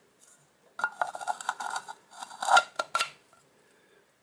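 A clear plastic catch cup's lid being pressed and clicked shut: a run of hard plastic clicks and rattles with a thin squeak of plastic rubbing on plastic, lasting about two seconds.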